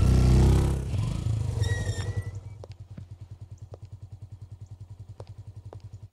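Several motorcycle engines, loud at first as the bikes pull away, fading over the first few seconds into a faint, fast, even putter. A brief high tone sounds about two seconds in.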